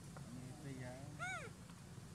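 A young macaque's short, high call that rises and falls in an arch, about a second in, after a lower, wavering voiced sound. A steady low hum runs underneath.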